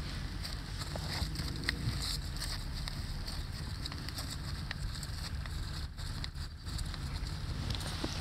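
Wind buffeting the microphone as a steady low rumble, with faint scattered clicks and rustles over it.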